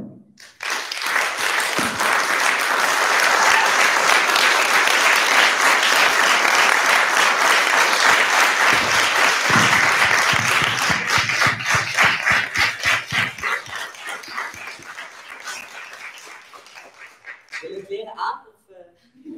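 Audience applause that starts about half a second in, stays full and steady, then thins to scattered individual claps and fades away near the end.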